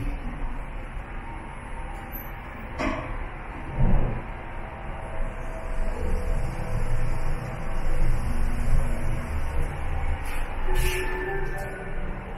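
Hyundai WBSS2 traction elevator car in motion: a steady low rumble and hum of the ride, with a sharp knock about three seconds in and a click near the end.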